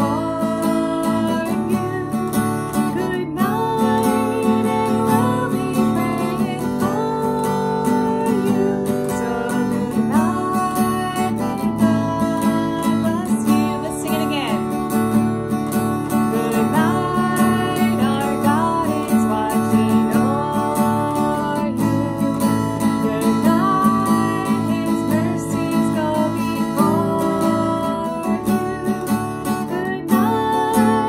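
A woman singing a slow song while strumming chords on an acoustic guitar.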